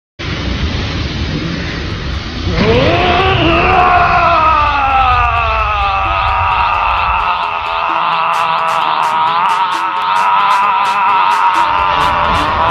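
Anime character's long held scream while powering up into a Super Saiyan transformation. It rises in pitch about two and a half seconds in, then is held with a slight waver, over a low rumble that stops about eight seconds in. A steady ticking beat, about two or three ticks a second, comes in around then.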